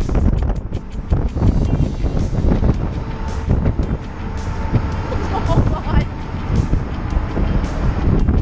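Wind buffeting the camera microphone on a ship's open deck, a heavy, steady low rumble, with background music over it.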